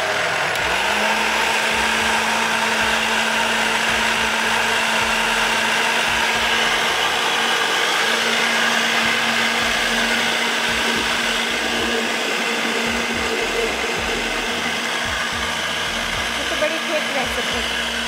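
Countertop jug blender running steadily, puréeing a watery tomato-and-vegetable mixture. Its motor hum settles in about a second in and steps up slightly in pitch midway.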